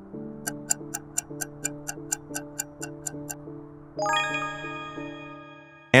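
Quiz countdown sound effects over soft background music: clock-like ticking, about three ticks a second for some three seconds, then about four seconds in a bright bell-like chime rings out and fades, marking the answer reveal.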